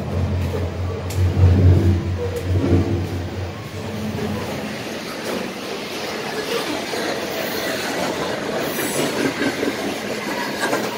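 CP Rail freight train passing on the tracks directly overhead. It is heard first inside a corrugated steel culvert as a deep, droning rumble. After about four seconds, out of the culvert, it becomes the steady rolling and clatter of freight car wheels on the rails.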